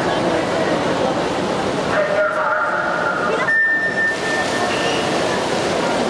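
Electronic start signal of a backstroke swimming race: a single steady beep about three and a half seconds in, lasting a second or so, over the crowd chatter of an indoor pool hall.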